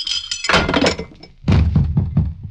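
Radio-drama sound effect of a drugged man collapsing: a crash about half a second in and a heavy thud on the floor about a second and a half in.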